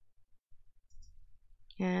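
Quiet room with a faint low hum and one faint click about halfway through, then a woman starts speaking near the end.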